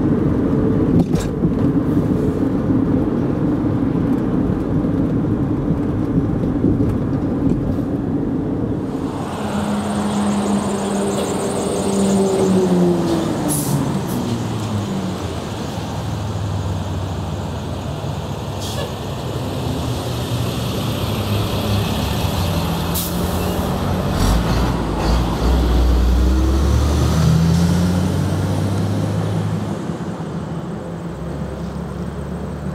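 Steady road and engine noise of a car driving, heard from inside the car. About nine seconds in it cuts to road traffic going by, with engines that glide in pitch as vehicles pass and a deep engine passing near the end.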